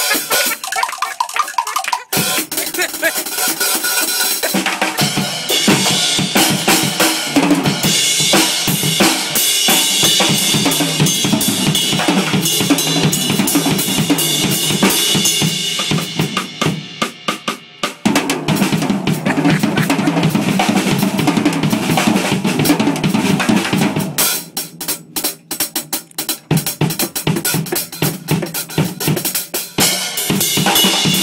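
Acoustic drum kit played in a fast solo: dense snare, tom and bass drum strokes under cymbal wash. The playing drops twice to softer, sparser strokes, about halfway through and again a few seconds before the end, then builds back up.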